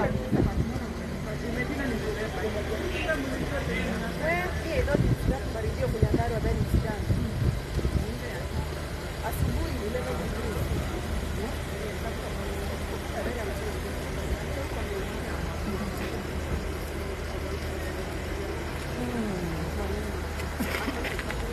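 People talking over a steady low engine hum, the voices strongest in the first several seconds and fainter after.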